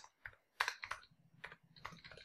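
Faint typing on a computer keyboard: a handful of separate keystrokes at an uneven pace.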